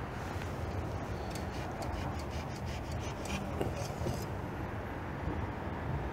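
A run of light clicks and rattles from handling the engine oil dipstick as it is drawn out to check the level, over a steady low hum. The clicks stop about four seconds in.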